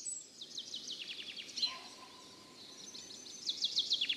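Songbirds singing in a forest: quick runs of high chirps that step down in pitch, one in the first second and a half and another starting a little past three seconds in.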